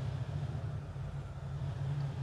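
Steady low hum and rumble under faint background hiss: the room tone of the recording.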